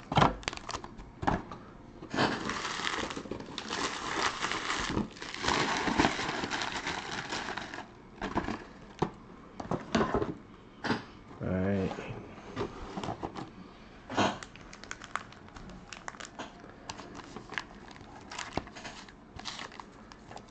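Crinkling of plastic wrap and foil trading-card packs being handled as a box of 2020 Panini Certified football packs is unwrapped, dense for about six seconds starting two seconds in. It then falls to lighter rustles and small ticks.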